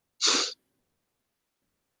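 A person's single short, sharp burst of breath, about a quarter second in and lasting about a third of a second.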